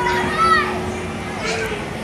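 Young children's voices at play, with a high-pitched squeal rising and falling in the first second over a general hubbub of voices.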